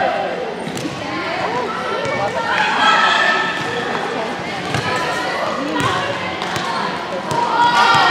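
Girls' voices calling out and chatting across a large gym, with a few scattered thuds of volleyballs being hit and bouncing on the hardwood court.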